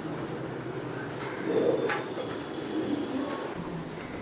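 A bird calling with a few soft, low notes, the strongest about a second and a half in, over a steady background hiss.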